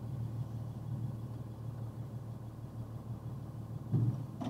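Vehicle engine idling at a standstill, a steady low hum heard from inside the cab, with a short knock at the very end.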